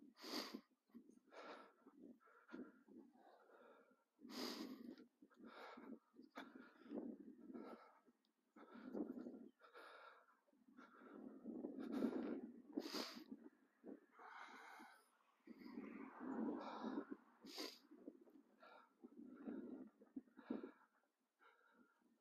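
Faint, irregular crunching steps on a sand-school surface, one or two a second.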